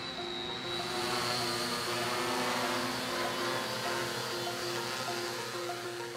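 Background music with sustained notes, over the steady whir of a multirotor delivery drone's propellers and a thin high motor whine.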